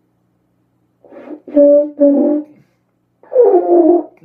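French horn played by a beginner, a saxophonist with no brass experience: after a second of silence, a faint start, two short notes at the same pitch, then a longer note that slides down in pitch near the end. The unsteady, sagging notes are those of a player who has not yet found a brass embouchure.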